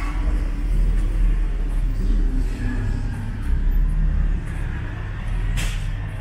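Low, steady rumble of city street traffic, with a brief sharp click about five and a half seconds in.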